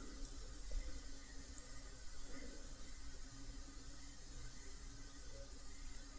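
Faint steady hiss with a low hum: room tone, with no distinct sound in it.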